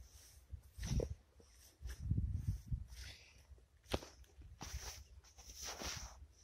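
Faint footsteps and rustling through young wheat plants, with a few short knocks and a low rumbly patch about two seconds in, and a longer rustle near the end.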